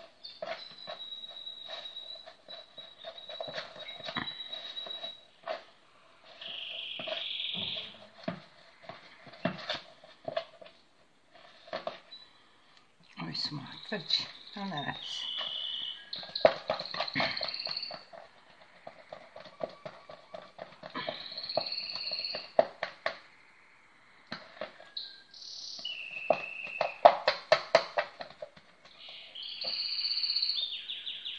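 A spoon clicking and scraping against a plastic bowl while stirring flour into a yeast dough, in quick runs of strokes, with birds chirping in the background.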